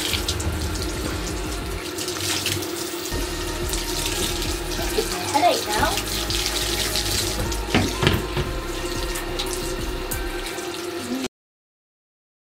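Handheld shower water running into a bathtub as long hair is rinsed under it, a steady rush that cuts off suddenly near the end.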